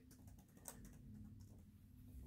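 Faint keyboard typing: a run of soft key taps as the letters of a word are entered.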